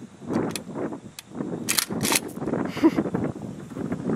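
Wind buffeting the microphone, with a few sharp clicks, two of them close together about halfway through.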